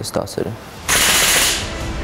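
A man's voice briefly, then about a second in a sudden loud burst of noise that fades away over the next second.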